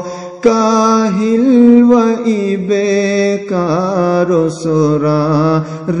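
A man's voice singing a Khowar devotional prayer poem (kalam) in long, slowly wavering held notes, in a chant-like style. There is a short pause at the very start, and brief breaks between phrases.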